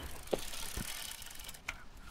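Bicycle sound effect: a freewheel ticking, with a few light knocks and clicks, fading away.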